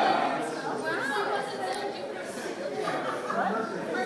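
Indistinct chatter: several voices talking at once, none of them clear enough to make out.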